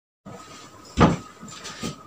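A single short thump about a second in, over faint room noise, followed by a few faint knocks.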